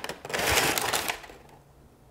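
Crumpled brown kraft packing paper crinkling and rustling as it is pulled out of a cardboard box, for about a second, then dying away.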